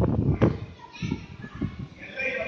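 Children's voices chattering in a large hall, with two loud thumps in the first half second.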